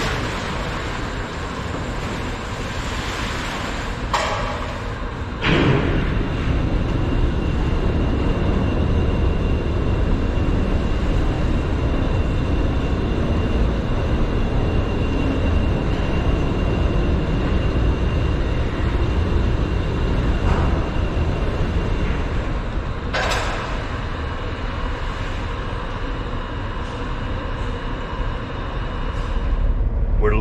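Steady machinery rumble and hum inside a large metal building, with a thin high whine through the middle stretch. Sharp clanks ring out about four seconds in, again about a second later when the sound gets louder, and once more near the end.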